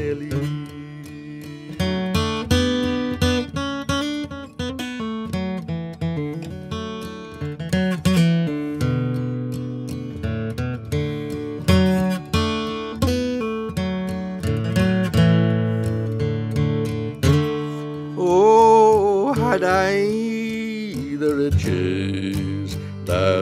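Solo acoustic guitar playing an instrumental passage between verses of a folk ballad, a quick run of picked notes over a low bass line.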